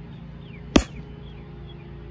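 A single sharp smack about three-quarters of a second in: the air pad of a toy stomp rocket being struck, too weakly to launch it.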